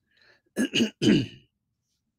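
A man clearing his throat, a couple of short rasps and then a longer one with falling pitch.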